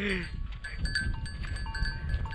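Low rumble of wind and movement on a handheld camera while riding a camel, with faint, thin ringing tones from small bells on the camels' harness that come and go.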